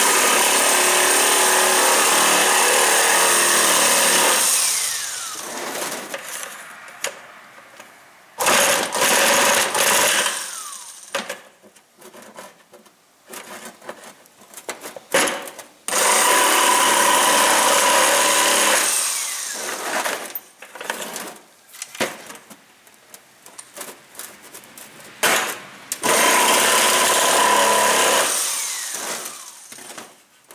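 Jigsaw cutting through the wall of a plastic five-gallon bucket in four runs of a few seconds each, the motor winding down after each run, with handling noise between. It is cutting between drilled corner holes to open the bucket's sides for a 330 body-grip trap.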